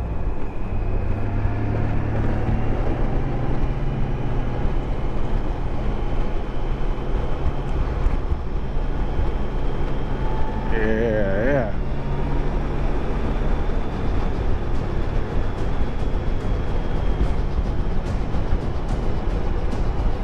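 Motorcycle riding at a steady cruising speed: a constant engine drone mixed with wind and road noise on the microphone. A brief voice comes through about eleven seconds in.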